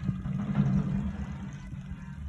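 Motorcycle engine running steadily at low revs.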